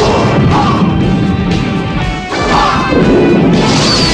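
Loud heavy rock music with distorted electric guitar and crashing hits, dipping briefly a little over two seconds in.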